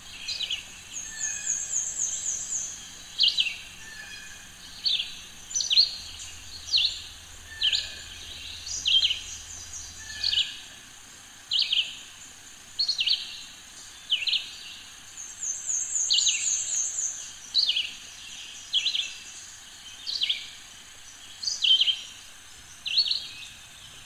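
Birds singing: one repeats a short downward-slurred call about once a second, and a very high rapid trill comes in twice, near the start and about two-thirds of the way through.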